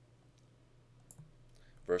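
A few faint clicks over a low, steady electrical hum, while the on-screen chart is cleared from the digital whiteboard. A man's voice starts right at the end.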